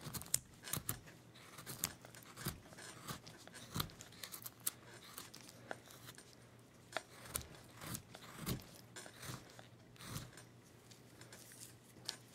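Hand carving blade slicing into a basswood block: a series of short, irregular cuts and scrapes, some sharper than others.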